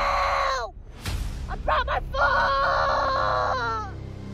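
A person's voice screaming in pain from a broken foot in long, drawn-out cries. One cry falls away in the first second, a sharp knock comes about a second in, then short yelps, then another long cry that drops in pitch near the end.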